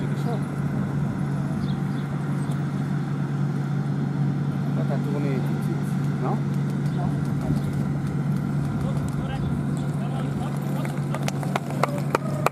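Steady low hum over outdoor crowd ambience with faint voices. Near the end come a few sharp clicks a second, growing louder: the hoofbeats of a pair of carriage horses trotting toward the microphone.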